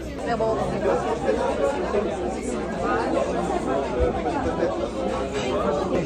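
Busy restaurant dining-room chatter: many voices talking over one another in a large room.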